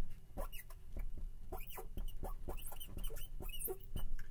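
Marker writing on a board, squeaking in a quick series of short, pitch-sliding strokes as the letters are formed.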